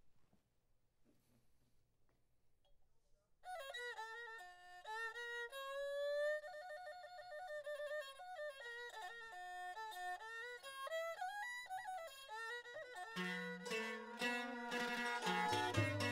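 Khmer traditional wedding music: after a few seconds of near silence, a bowed two-string fiddle (tro) opens alone with a gliding, ornamented melody. Near the end the rest of the ensemble comes in beneath it with lower plucked and struck notes and a drum.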